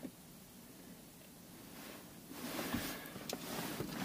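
Near silence at first, then faint rustling and handling noise with a couple of light clicks from about halfway, as hands work at the plastic console.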